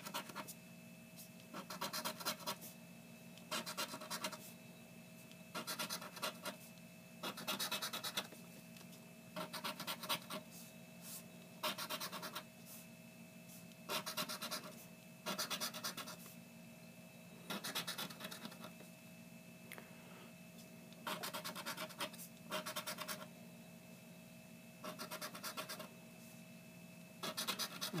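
Scratch-off lottery ticket being scraped with a hand-held scraper as its coating is rubbed away: short bursts of rapid scratching strokes about every two seconds, with a faint steady hum underneath.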